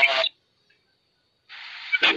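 A voice on a live-stream call trails off, then there is a second of dead silence. About one and a half seconds in, a steady hiss comes up over the line and leads into the next words.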